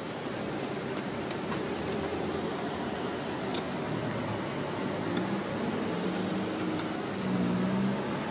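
Steady low rumble and hiss of a car idling at a drive-up ATM, heard from inside the car, with a couple of faint clicks.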